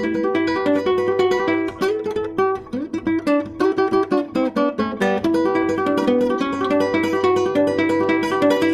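Nylon-string classical guitar fingerpicked with the thumb and first three fingers (p-i-m-a), a quick rolling stream of single plucked notes in a highlife-style groove.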